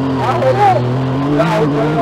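A Yamaha UTV's 1000 cc engine running under way, heard from inside the open cabin: a steady drone that rises slightly about one and a half seconds in.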